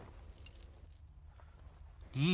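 Faint, brief metallic jingling, such as the dangling gold ornaments of a bride's headdress make when it moves, in the first half second or so, over a low steady hum.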